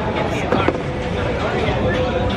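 City street sound: indistinct voices over a steady low traffic rumble, with two short sharp clicks a little after half a second in.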